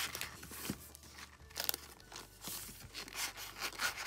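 Planners rubbing and scraping against the other notebooks and the bag's sides as one is pushed into a tightly packed tote bag compartment: a series of short, irregular rustles and scrapes.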